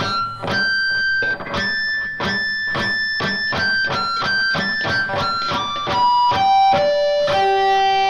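Electric guitar (Dean Nash Vegas) playing a run of picked natural harmonics from the cluster close to the nut, the high notes of a dominant ninth chord: F, G, A and B. The notes come about two a second at a high pitch, then step lower from about six seconds in, and the last one rings on.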